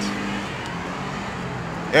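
City street traffic noise: a steady rush of passing cars, with a low hum that fades about half a second in.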